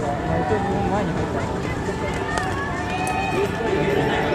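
Several people shouting and calling over one another at the trackside as a pack of distance runners passes, with the runners' footsteps beneath.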